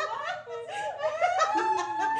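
A few people laughing and chuckling together.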